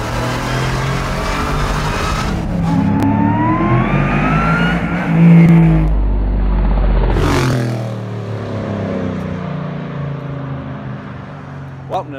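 Ringbrothers 1966 Chevrolet Chevelle restomod's V8 revving hard as it accelerates toward and past. A rising whine climbs about three seconds in, the engine is loudest a little after five seconds, and it sweeps past and fades over the last few seconds.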